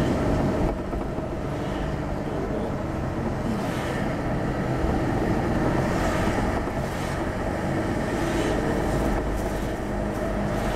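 Steady road and engine noise heard inside a car's cabin while driving at moderate speed, a low rumble with no distinct events.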